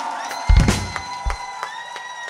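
Concert crowd cheering and clapping over a held closing chord from the band, with a few heavy low drum hits about half a second in; the sound fades away.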